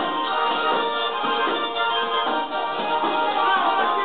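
A tarantella dance tune played on a small button accordion (organetto), its reedy notes sounding continuously.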